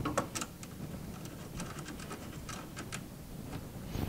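A scatter of faint, irregular metallic clicks as a nut on the cable lug is run down onto the inverter's positive battery terminal stud with a socket driver.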